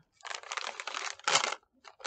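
Foil snack bag of Takis Nitro rolled tortilla chips crinkling as it is handled and pulled open, in uneven crackly rustles with a louder crinkle about one and a half seconds in.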